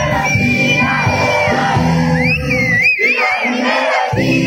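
Live band playing on stage through a PA, with a crowd shouting and singing along and a high, wavering lead line on top. The bass end drops out about three seconds in, leaving the upper parts and the crowd.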